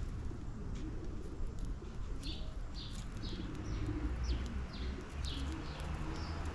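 House sparrows chirping in short repeated notes, about two or three a second from about two seconds in, with pigeons cooing low underneath.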